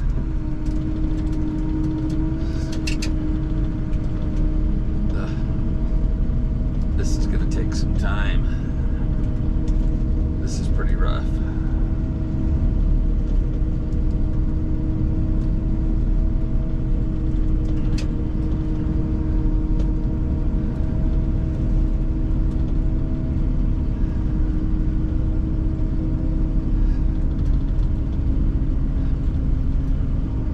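An engine running at a constant speed: a steady low rumble with an unchanging hum that holds throughout.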